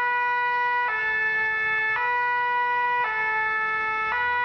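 Two-tone emergency vehicle siren, its two notes alternating about once a second.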